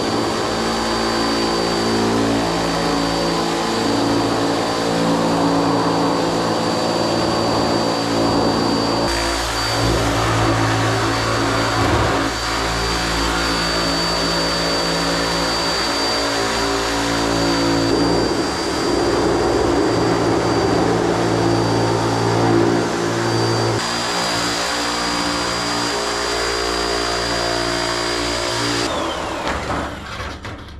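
Handheld electric sheet-metal shear running as it cuts sheet metal: a steady motor hum with a constant high whine. Near the end the motor shuts off and the whine falls away.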